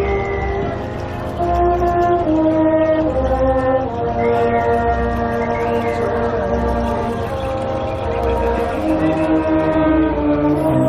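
Brass marching band playing slow held chords that change every second or two, with French horns, trumpets, trombones and tubas, over a regular low beat.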